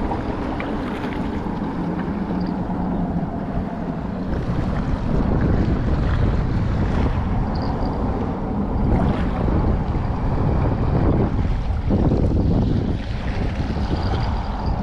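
Wind buffeting the microphone, with small waves lapping at the sandy shoreline.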